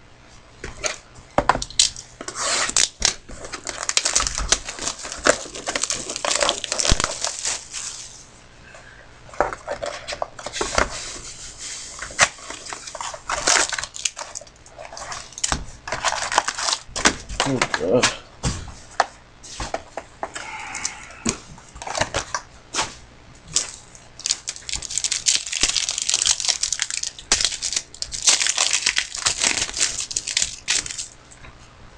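Trading-card pack wrappers torn open and crinkled, with cardboard boxes and cards handled and knocked on a desk. The tearing and crinkling come in two long stretches, one a couple of seconds in and one near the end, with scattered clicks and taps between.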